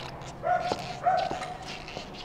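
Two short whines of steady pitch, about half a second long and half a second apart, the first about half a second in, with a few light clicks between them.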